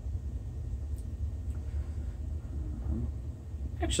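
A steady low rumble, with a faint light tick about a second in.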